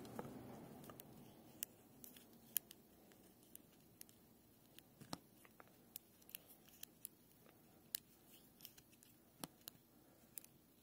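Faint, irregular small metal clicks and ticks of a precision screwdriver turning a stainless steel screw into the threaded heat sink of an MK8 hotend, under near silence.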